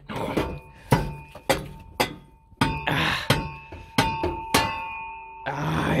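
Sharp metal knocks and clanks, about seven of them, as a rusted rear exhaust muffler is yanked and worked off its pipes and hangers. The muffler's sheet-metal shell rings after the knocks, with stretches of scraping in between.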